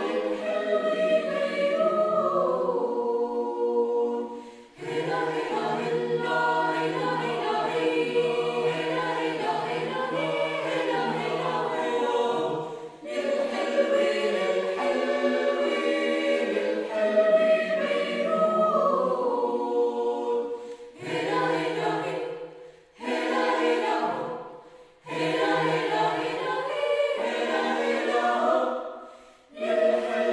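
Mixed choir of men's and women's voices singing a cappella in sustained phrases with brief breaks between them. Toward the end the phrases become short, separated by short pauses.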